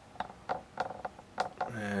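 A few faint, separate clicks, then a man starts speaking near the end.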